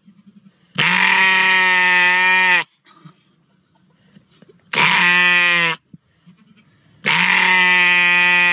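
A sheep bleating loudly three times: a long call of about two seconds, a shorter one of about a second, then another long call near the end.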